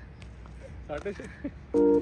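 Electronic beep: a steady chord of several pitches that switches on sharply near the end, after faint voices.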